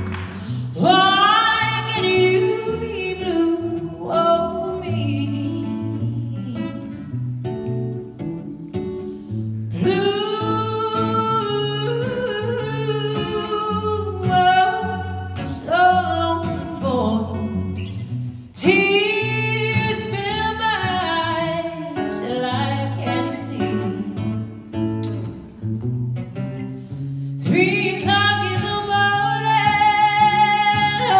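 A woman singing live into a microphone with instrumental accompaniment, in long held phrases that bend in pitch, heard through the PA in a large hall.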